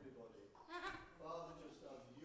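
A man speaking, faint and indistinct.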